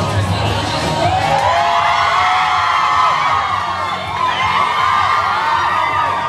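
A crowd cheering and screaming in high voices, swelling about a second in, over background music.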